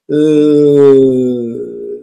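A man's voice holding one long hesitation vowel, a drawn-out "uhhh" at a steady low pitch that sinks a little toward the end, lasting nearly two seconds.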